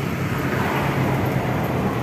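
Suzuki Carry Futura pickup's engine idling steadily.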